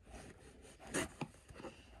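Kitchen knife cutting along packing tape on a cardboard box: soft scraping, with a louder scrape about a second in followed by two short clicks.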